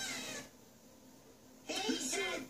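Cartoon voices from a television, picked up in the room: a short sound at the very start, about a second of near silence, then two high cartoon voices begin shouting together near the end.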